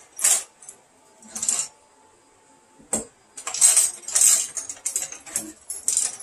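Small metal pottery tools clinking and rattling against each other in a tray as they are rummaged through. It comes in short bursts, with a sharp click about three seconds in and a busier spell of clatter over the last few seconds.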